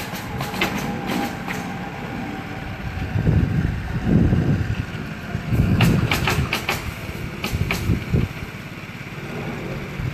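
Nails being driven into roof shingles: runs of sharp clicks near the start, again about six seconds in and once more around eight seconds. Under them a low rumble swells and fades twice in the middle.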